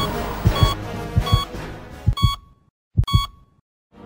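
Heart-monitor sound effect: a short electronic beep about every 0.7 s, each paired with a low double-thump heartbeat, over background music. Everything cuts out suddenly after about two and a half seconds, and one last beep and heartbeat come at about three seconds before silence.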